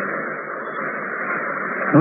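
Steady, muffled hiss and murmur with a thin, radio-like sound and no clear words in it: the background noise of a low-quality sermon recording. A man's voice cuts in loudly at the very end.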